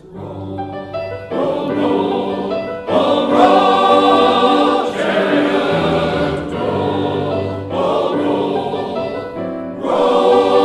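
Men's choir singing a spiritual in full harmony, starting softly and growing louder in two steps, about a second in and about three seconds in.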